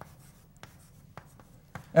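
Chalk writing on a chalkboard: a string of faint taps and scratches as the chalk strokes out a word.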